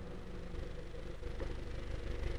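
A steady low hum of background noise with no speech, rising slightly in level toward the end.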